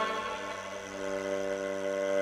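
Kamancheh (Persian bowed spike fiddle) holding a long bowed note that eases off and then swells again.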